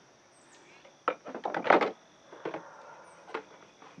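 Items being rummaged and moved in a plastic tool tote. A burst of knocks and rustling comes about a second in, then a few lighter knocks. Two faint high chirps sound over it.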